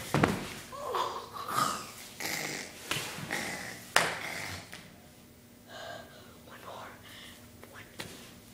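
Breathing and short, muffled vocal noises close to the microphone, with a few sharp knocks of hands or body landing on a hard floor; the loudest knock comes about four seconds in. It goes quieter after that.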